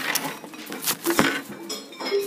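Scattered, irregular clinks and knocks of children's mallets tapping on classroom xylophone and metallophone bars, with a few short faint bar tones.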